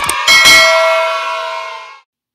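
A bell ding sound effect for the notification bell being clicked in a subscribe-button animation: a couple of short clicks, then one bell strike about a quarter second in that rings and fades over about a second and a half.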